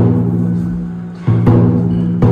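Large barrel-shaped taiko drum (nagado-daiko) struck with sticks: a hit at the start rings out deep and slowly fades, then two quick hits come a little over a second in.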